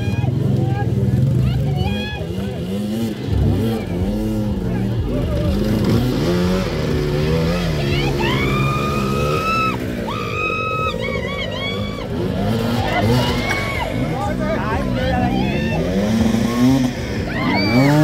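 Enduro dirt-bike engines revved over and over on a muddy hill climb, the pitch swinging up and down as the bikes struggle for grip while being pushed. About eight seconds in, one engine is revved higher and held twice.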